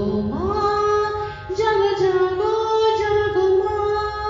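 A woman singing a devotional song in long held notes. Her voice slides up into a note just after the start and dips briefly about a second and a half in.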